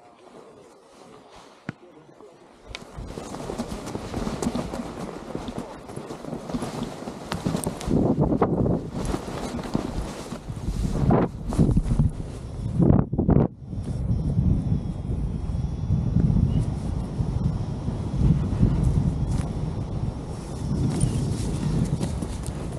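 Wind buffeting the camera microphone as a paraglider pilot runs down a snow slope to launch, with running footsteps in the snow. The wind noise starts about three seconds in and keeps on, loud, once the pilot is airborne.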